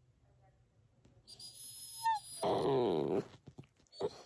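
Puppy vocalising: a short high squeak, then a drawn-out whine sliding down in pitch for just under a second, about halfway through. A soft rustling comes before it.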